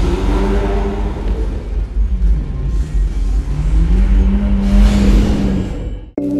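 A car engine revving over intro music, with a deep rumble: its pitch drops about two seconds in, climbs back and holds, and a whoosh swells up near the end.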